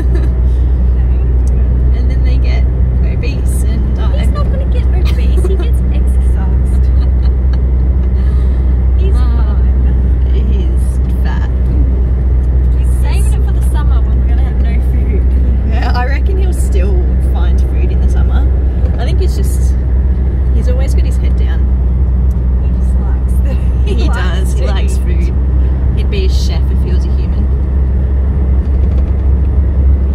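Steady low rumble of road and engine noise inside a moving car's cabin, with snatches of women's talk and laughter over it.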